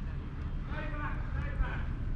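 Steady low rumble of outdoor background noise, with a faint voice about a second in.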